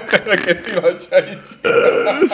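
Men laughing: a quick run of short laughing bursts, then a louder, rougher burst of laughter near the end.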